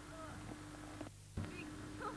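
Old camcorder recording with a steady electrical hum under faint outdoor background. A little after a second in the sound drops out briefly and comes back with a sharp click, where the recording was stopped and restarted.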